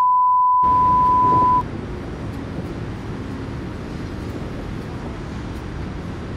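A loud, steady 1 kHz test-tone beep, the bars-and-tone effect of a colour-bars video transition, lasting about a second and a half and stopping abruptly. Under its end a steady rumbling noise starts suddenly and carries on.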